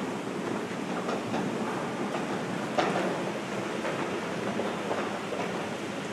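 Floodwater being forced up through floor drain vents, a steady rushing, bubbling noise, with one brief knock about three seconds in.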